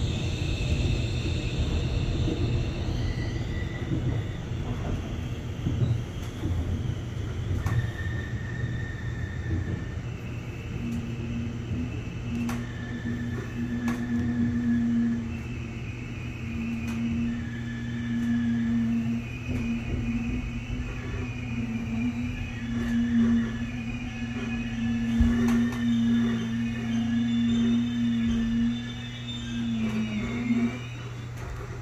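Inside an electric metro train on the Suin–Bundang Line as it slows into a station. A steady low hum runs throughout. From about ten seconds in, a steady low motor tone and shifting high whining tones join it as the train brakes.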